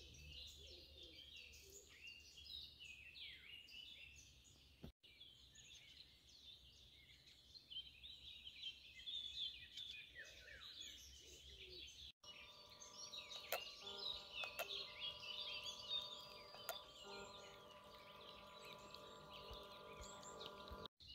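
Faint birdsong, many small birds chirping and trilling together in a dawn chorus. From about twelve seconds in, a remote-control bait boat's motors add a steady, even hum beneath it.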